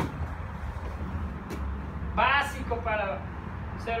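A short burst of a voice about halfway through, over a steady low room hum.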